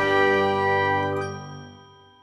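Outro logo jingle's last chiming chord, held for about a second and then fading out to nothing by the end.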